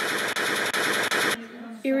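Machine-gun fire sound effect: a fast, even rattle of about six or seven shots a second that cuts off suddenly about a second and a half in.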